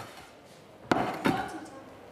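A ceramic baking dish set down on the kitchen worktop with a sharp knock about a second in, followed by a moment of speech and a lighter knock.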